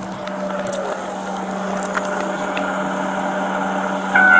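A steady low hum of an idling vehicle engine, holding one pitch throughout, with a few faint clicks over it.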